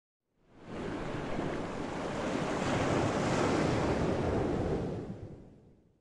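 A steady rush of water that fades in within the first second, holds, and fades out near the end.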